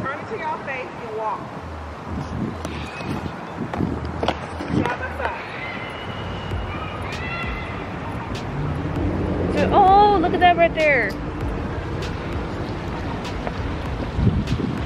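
Voices over a steady background hiss of city noise. About ten seconds in comes the loudest sound, one drawn-out vocal call whose pitch falls.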